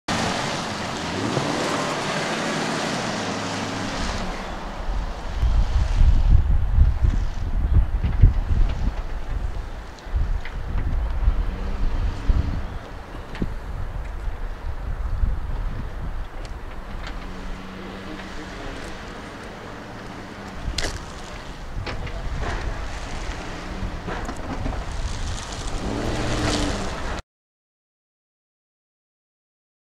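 Pickup truck engine running and revving at low speed, with heavy wind buffeting on the microphone that is loudest in the first third. The engine pitch rises near the end, then the sound cuts off suddenly.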